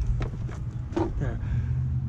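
A few light knocks of a plastic scooter storage bin being set down and shifted on concrete, over a steady low hum.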